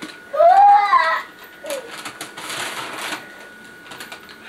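A short voice sound near the start, then paper rustling and crinkling as a gift in a white paper bag is unwrapped.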